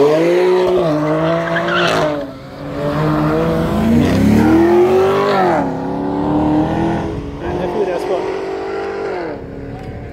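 High-performance car engine accelerating hard from a launch, its note climbing in pitch and dropping sharply at each upshift, several gear changes in succession.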